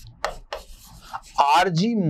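Chalk scratching across a blackboard in a few short writing strokes as a line of a formula is written.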